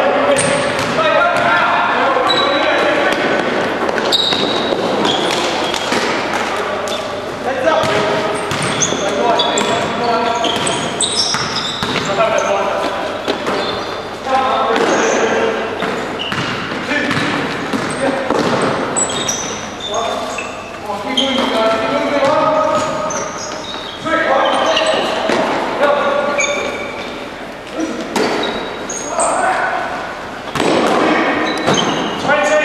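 Basketball bouncing on a sports-hall court during live play, under steady indistinct voices, all echoing in the large hall.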